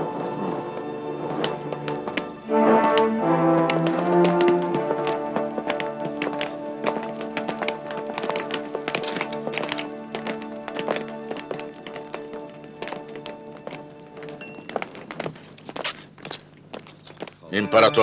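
Dramatic film score of sustained choral and orchestral chords, changing chord about two and a half seconds in, overlaid with a long run of sharp, irregular taps and knocks that thin out near the end.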